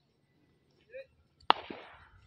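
Near silence, broken by one sharp click about one and a half seconds in that trails off in a short hiss.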